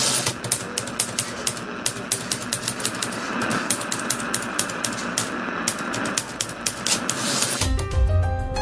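Typewriter keys clacking in quick, uneven strokes, a sound effect. Music with held tones comes in just before the end.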